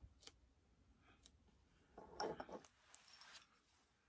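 Faint crinkling and rustling of vinyl transfer tape being handled and pressed onto a glass shot glass, mostly in a short burst past the middle, with a couple of small clicks near the start.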